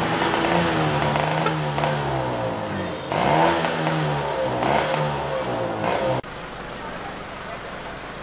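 Motorcycle engines and people's voices in a street, their pitch rising and falling. About six seconds in the sound cuts off abruptly to a quieter, steady background noise.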